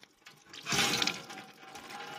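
Water from a foot-pumped tap splashing into a stainless steel sink: a gush starts about half a second in and eases off into a fainter trickle.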